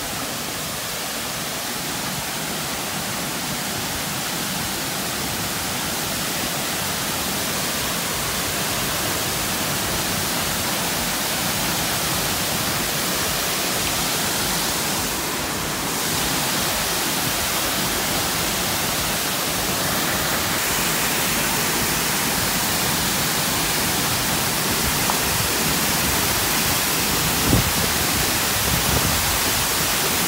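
Waterfall and river rapids: a steady rush of falling and churning water, with a brief knock near the end.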